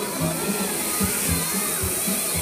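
Music for a musical fountain show, with a steady bass beat, over the hiss of the fountain's water jets spraying close by.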